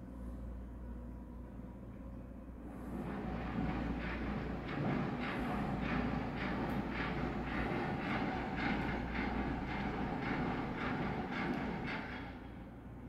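A vehicle running close by, building up about three seconds in and then carrying on with an even, rhythmic clatter of a few beats a second, over a low steady hum.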